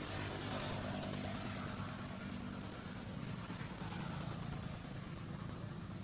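An engine running with a steady low hum.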